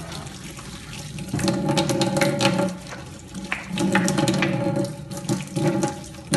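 Tap water running into a stainless steel sink and splashing over an ice cream machine piston as it is scrubbed under the stream. The splashing swells louder twice, with small clicks of the part being handled.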